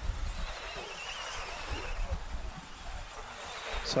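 Trackside sound of 1/10-scale electric 2WD off-road RC buggies racing: a faint wavering motor whine about a second in, over a steady hiss and low rumble.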